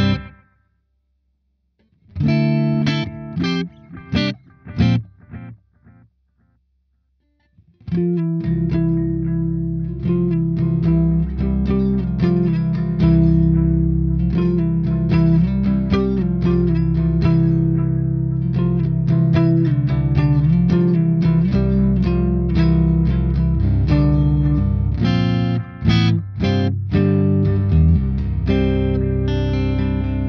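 Electric guitar played through an MXR Carbon Copy Deluxe analog delay pedal with the delay engaged: a few short separate chords between pauses, then from about eight seconds in, continuous sustained playing.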